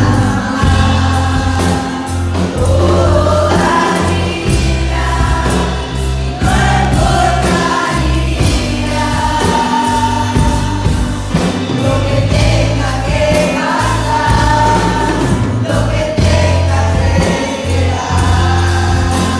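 Live church worship music: a congregation and worship team singing together over a band with electric guitar and drum kit, with held bass notes underneath.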